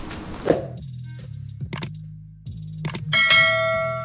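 Sound effects of a subscribe-button animation over a low, steady musical drone: two sharp clicks about a second apart, then a bright bell ding about three seconds in that rings on and fades slowly.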